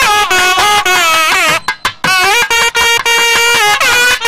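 Nadaswarams, the long South Indian double-reed pipes, playing a sliding, ornamented melody together, with a brief break about one and a half seconds in; thavil drum strokes sound beneath.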